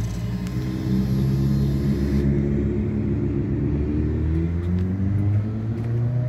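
Suzuki SV650's 645 cc V-twin engine running at idle, rising a little in pitch about a second in and settling back down near the end.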